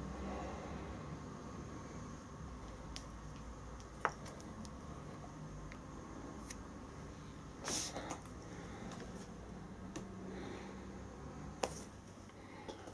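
Faint handling of a steel hand gripper with chalked hands: a few light clicks and a short rustle about two-thirds of the way in, over a steady low room hum.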